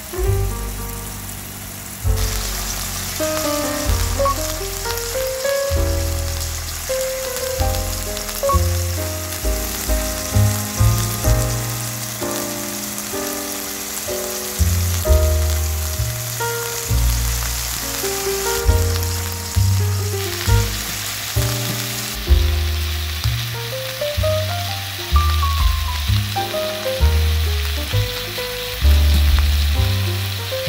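Beef steak sizzling as it fries in oil in a pan, heard under background music with a melody and bass line.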